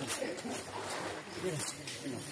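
Voices murmuring in the background, with short rustles and clicks as a wet nylon cast net is pulled from the water and handled on the mud.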